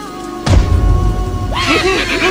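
Cartoon soundtrack with steady background music. A heavy low thud comes about half a second in, then excited cartoon-character voices rise and fall in pitch near the end.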